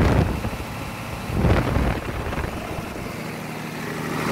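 MWM diesel generator-set engine running steadily with little load on it, the salt-water load bank not yet drawing current. The sound drops back shortly after the start, swells briefly about a second and a half in, then settles to a quieter steady hum.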